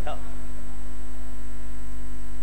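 A loud, steady electrical mains hum from the microphone and sound system, with the tail of a man's voice fading out at the very start.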